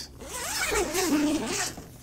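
Zipper on a fabric shower enclosure pulled open in one long stroke of about a second and a half, its pitch wavering with the pulling speed.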